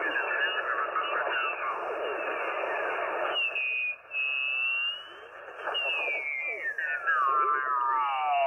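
Icom IC-706MKII transceiver's speaker as the VFO dial is turned down through the 40-metre band in lower sideband. Off-tune single-sideband voices and carrier whistles slide in pitch over band noise. A whistle rises about halfway through, and near the end another falls steadily in pitch as the dial sweeps past it.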